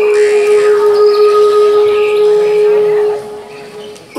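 A man singing one long held note through a hall PA. The note stops about three seconds in and is followed by a quieter moment.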